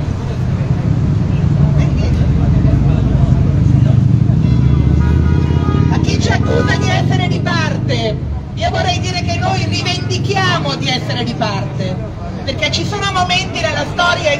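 A heavy road vehicle rumbling past on the street for the first six seconds or so, a low steady drone. From about six seconds in, a woman's voice comes through a handheld microphone's loudspeaker.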